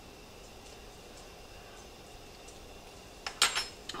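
Faint, steady kitchen room tone, then, about three seconds in, a brief sharp noise from tasting the gravy off a metal spoon.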